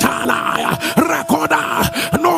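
A man's voice in a rapid string of short shouted cries, each rising and falling in pitch, about three a second, over a faint held musical note.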